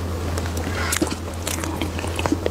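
Close-miked chewing of soft cream sponge cake: a run of short wet mouth clicks and smacks. A steady low hum sits underneath.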